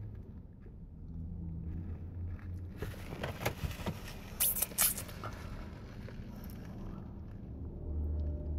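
Handling noise from a camera being picked up and turned around inside a car: a few knocks and scrapes about three to five seconds in, over a low steady hum in the cabin.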